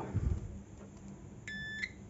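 Digital multimeter's continuity buzzer giving one short, steady high beep as the meter is set to its buzzer range, with a few faint handling knocks before it.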